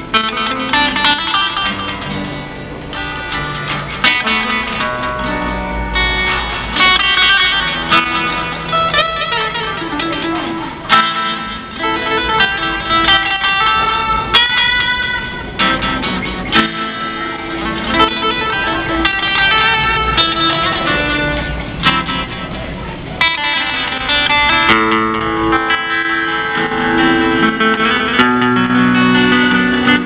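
Electric guitar played solo in an African style: a busy plucked melody over chords and bass notes, played without a break.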